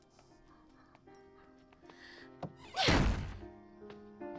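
Soft background music with held notes, broken about three seconds in by a loud door slam that dies away over about half a second.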